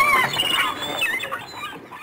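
High-pitched squealing laughter, gliding up and down in pitch and fading out steadily until it cuts off at the end.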